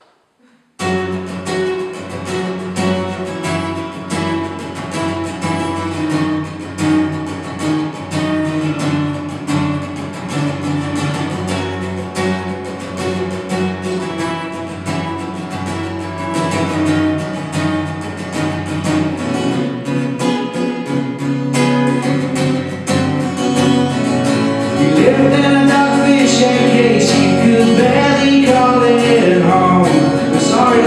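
Live solo acoustic guitar, strummed, starting about a second in with a steady rhythm and getting louder about 25 seconds in, where a man's singing voice seems to join near the end.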